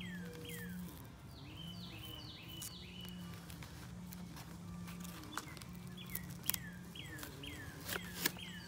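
A songbird calling over and over with short, downward-sliding chirps, about one or two a second, with a quick run of four higher notes a couple of seconds in. A few faint clicks come from masking tape and paper being handled.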